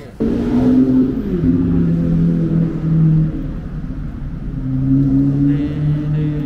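Loud car engine running, its pitch dropping about a second in and then holding. It eases off around the middle and rises again near the end.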